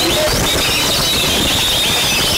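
Several caged oriental magpie-robins (kacer) singing at once: fast, overlapping high whistles and chirps over a dense, loud background noise.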